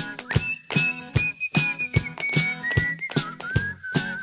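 A high whistled melody over a new wave rock band's steady drum beat. The whistled line comes in about a third of a second in and steps gradually down in pitch, wavering near the end.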